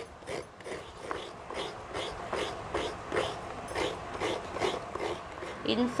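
Fresh coconut being grated by hand: an even rhythm of short scraping strokes, about two or three a second.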